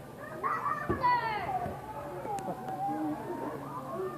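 Young children's voices calling and squealing while they play, with long, high, wavering cries. A thump sounds right at the start, and a low thud about a second in.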